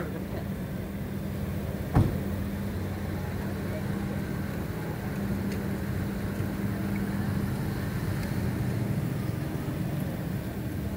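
An engine running steadily with a low, even hum, and a single sharp knock about two seconds in.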